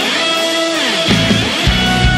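Instrumental passage of an alternative/post-hardcore rock song, electric guitars to the fore. For about the first second the drums and bass drop out, leaving guitar with one note sliding down in pitch, then the full band comes back in.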